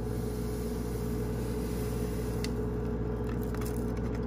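Powdered electrolyte drink mix pouring from a torn stick packet into a plastic water bottle: a faint steady hiss over a steady low hum, with one light tick about halfway through.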